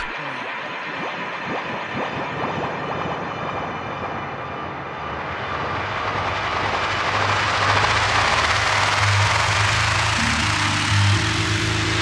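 Build-up in a tech house / bass house DJ mix: a rushing white-noise riser sweeps upward and grows louder, with a low bass line coming in a little past halfway.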